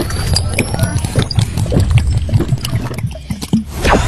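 Juice being slurped up a long coiled plastic tube, gurgling and bubbling with an uneven run of small pops as liquid and air are pulled through together.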